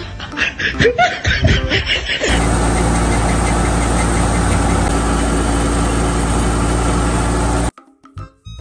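Background music for the first two seconds, then a threshing machine running: a loud, steady machine noise with a low hum, starting suddenly about two seconds in and cutting off abruptly just before the end.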